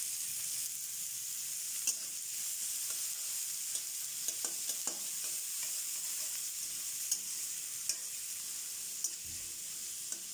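Sliced onions sizzling as they fry in a metal wok, with a steady hiss. A steel spatula stirs them, scraping and tapping against the pan in scattered short clicks.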